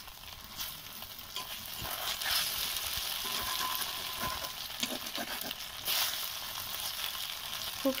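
Paneer cubes sizzling in hot oil in a black iron wok: a steady frying hiss, with a few short scrapes and taps as a spatula turns the pieces.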